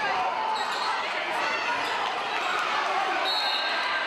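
A basketball bouncing during play on a gym floor, under a steady din of crowd and player voices.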